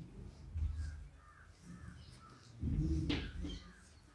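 Faint bird calls, a short run of repeated caws, followed by a louder, brief low sound about three seconds in.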